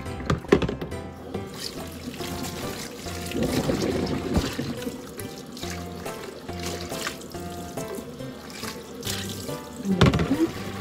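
Background music over kitchen tap water running into a stainless-steel sink as a bowl is rinsed under the stream. A sharp knock comes about half a second in.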